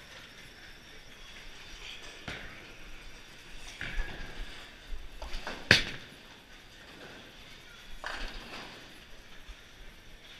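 Bowling alley sounds: a bowling ball lands on the lane with a sharp knock a bit past halfway, then the pins clatter about two seconds later, among scattered knocks from other lanes.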